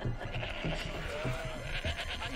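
Goats bleating.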